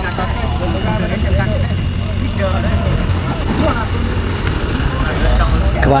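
Off-road race car's engine running with a steady low rumble, under spectators' chatter.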